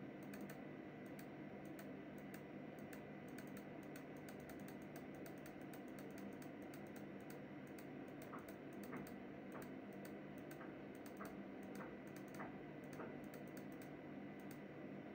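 Faint irregular clicking over a steady low hum, with a run of more distinct clicks from about eight seconds in.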